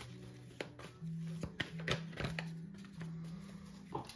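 Soft background music of sustained low tones that shift in pitch, with a few short clicks and taps of tarot cards being drawn from the deck and laid down on a cloth-covered table.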